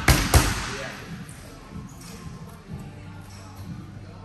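Boxing gloves punching into focus mitts: two sharp smacks about a third of a second apart at the start, then softer scattered taps and scuffs of footwork on the training mat.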